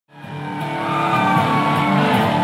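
Rock music fading in quickly from silence: held, droning tones with a few sliding pitches above them.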